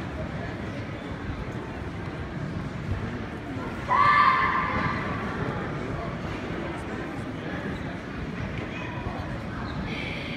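A karate kata kiai: one sharp shout about four seconds in, the loudest sound, fading over about a second in a large hall. Under it runs the steady murmur of the tournament crowd.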